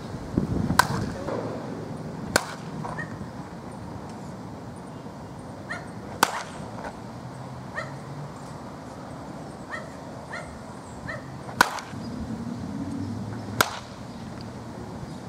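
Baseball bat hitting balls in batting practice: five sharp cracks, spaced irregularly from under two seconds to five seconds apart, with fainter ticks between them.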